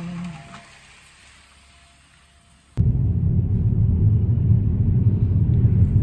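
Car cabin noise while driving in the rain: a loud, steady low rumble that starts abruptly about three seconds in, after a quiet stretch of faint background.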